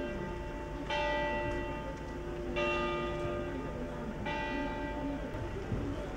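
A single church bell tolling slowly, struck three times a little under two seconds apart, each stroke ringing on into the next.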